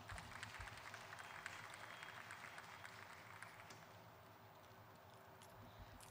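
Near silence: faint outdoor background noise, slightly louder in the first few seconds and then fading, with a few soft low knocks.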